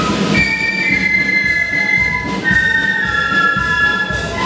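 A melody flute band playing a tune in parts, several flute lines held and stepping together in harmony over a regular beat.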